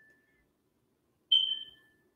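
A single short high-pitched beep about a second and a quarter in, starting sharply and fading over about half a second, after a faint steady tone at the very start.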